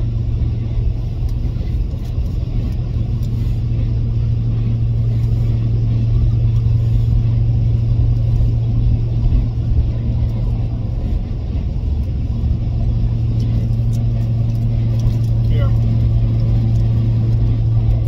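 Steady low drone of a vehicle on the move, heard from inside the cabin: engine and road noise with a constant low hum.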